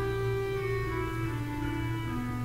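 Skinner pipe organ playing on its clarinet stop: a slow line of held reedy notes that steps down about a second and a half in, over a low sustained note.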